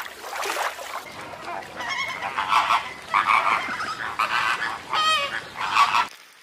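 A flock of flamingos honking, many goose-like calls overlapping, starting about a second in and running on as a dense chorus.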